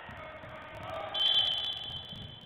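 A referee's whistle blows one long, loud, shrill blast starting about a second in. Low thuds from the court sound underneath.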